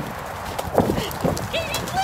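A ridden horse's hoofbeats on a dirt trail: a run of uneven low thuds.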